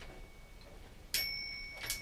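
A small metal bell struck once about a second in, ringing with a clear high tone that fades, then cut off short by a second click near the end.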